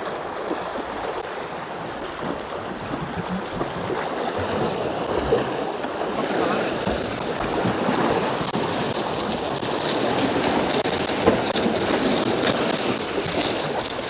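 Sea water washing and splashing against a rocky breakwater, while a small fish is reeled in and swung out of the water onto the rocks. In the second half, quick clicks and rattles build up over the water.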